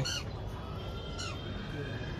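Faint bird calls: a few short calls falling in pitch, over a low steady background.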